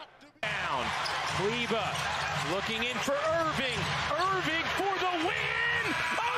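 Arena game audio from an NBA broadcast: steady crowd noise with a basketball being dribbled and voices calling out. It starts abruptly about half a second in, after a near-silent moment.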